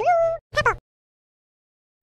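A cartoon cat's meow sound effect: one short high call that rises and then holds, followed by a brief second chirp, all within the first second.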